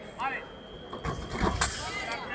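Sabre fencers' footwork thudding on the piste during a fast exchange, ending in a sharp burst about one and a half seconds in as the action finishes; voices around.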